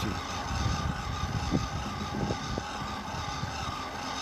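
200-watt, 24-volt friction-drive electric bicycle motor running with its roller pressed against the tyre, pushing the bike up a long hill: a steady whine over a rushing hiss.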